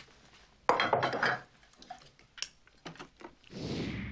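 Dishes and cutlery in a kitchen clattering and clinking. There is a loud clatter a little under a second in, then a few scattered light clinks, and a soft rushing swell near the end.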